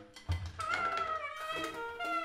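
Freely improvised drum and saxophone music. After a brief lull there is a low drum thud about a third of a second in, and then a high, wavering squeal that slides in pitch.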